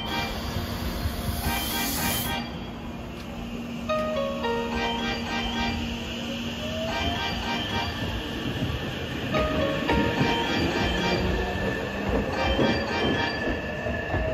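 Hankyu Railway electric train pulling away from the platform: a loud hiss of air in the first two seconds, then the traction motors' whine rising in pitch as it gathers speed, and wheels rumbling and clattering on the rails. A short chime melody repeats over it, and near the end another train can be heard coming in.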